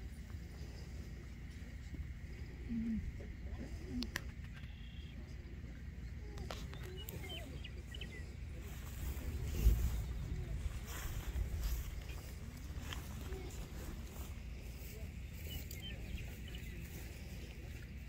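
Wind noise on the microphone with faint murmured voices in the background, and a low thump about ten seconds in.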